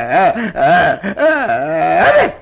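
A man's voice giving a drawn-out, wordless wail whose pitch quavers up and down about four times a second, in a few stretches broken by short pauses: a comic character's vocal noise in a live shadow-play performance.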